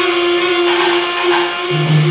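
Live jazz trio playing: the saxophone holds one long note over keyboard and drums, and a low bass note comes in near the end.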